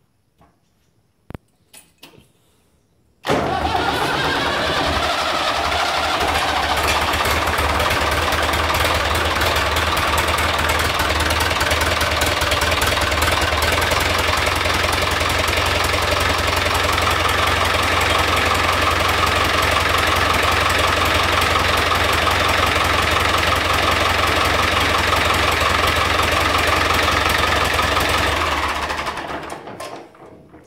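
David Brown 996 tractor's four-cylinder diesel engine, cold after standing overnight on freshly fitted piston rings, starts at once about three seconds in. Its revs climb over the next few seconds, then it runs steadily and is shut off near the end.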